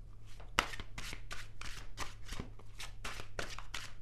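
A deck of tarot cards being shuffled by hand: a quick run of short clicks, several a second, over a faint steady low hum.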